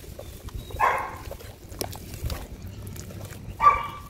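Wet, gritty sand and muddy water being squeezed and crumbled by hand, with a faint crackle and squish. A dog barks twice in the background, briefly about a second in and louder near the end.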